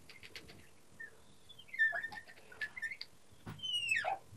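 Felt-tip marker squeaking on a glass lightboard while drawing: short high squeaks that slide up and down in pitch, with a few light taps of the tip on the glass.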